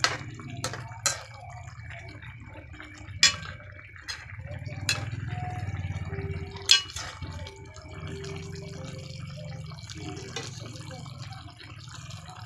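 Chicken and tomato stew simmering in a pan: the sauce bubbles over a low steady hum, with several sharp clicks in the first seven seconds.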